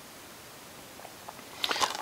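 Quiet room, then a few faint clicks and, near the end, brief rustling and clicking as a clear plastic Blu-ray case is handled to be opened.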